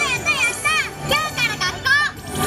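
A high-pitched, child-like voice in quick, short phrases over parade music.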